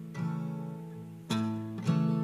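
Solo acoustic guitar, chords strummed three times with the notes ringing on between strums.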